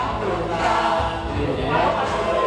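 A group of men and women singing together into a microphone, with music playing.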